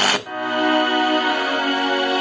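Music from a Sharp GF-9696Z boombox's radio playing through its speakers: strummed music breaks off with a brief dip about a quarter second in, and long held notes follow.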